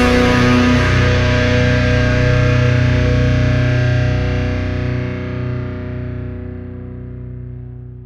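The final chord of an alt-metal song on distorted electric guitar, left to ring out once the drums stop and fading slowly away to nothing.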